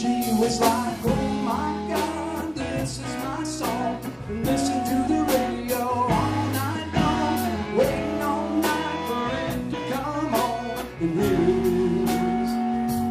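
Live country band playing an instrumental passage: electric guitars over bass and a drum kit keeping a steady beat, with a bending lead line on top.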